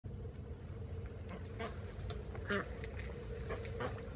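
Domestic duck giving a few short quacks.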